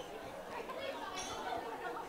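Faint, indistinct chatter of several people talking in a room.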